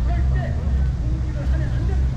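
Outdoor city ambience: a steady low rumble with faint, scattered voices of passers-by.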